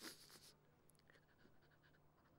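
A short breathy intake from a crying woman at the very start, then near silence with a faint steady low hum.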